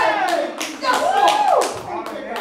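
Rhythmic hand clapping, about four claps a second, under a woman's voice over a microphone, drawn out and sliding up and down in pitch.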